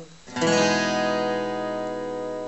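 Acoustic guitar: a C major seventh chord, second string open, strummed once about half a second in and left to ring, fading slowly.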